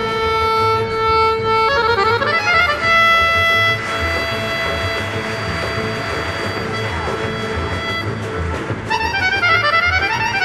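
Piano accordion leading a large Balkan folk orchestra of violins, accordions and double basses in a čoček. Held chords are broken by fast falling runs about two seconds in and again near the end.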